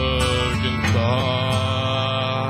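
A man singing into a handheld microphone over a karaoke backing track. He holds one note, slides down about a second in, then holds a new note.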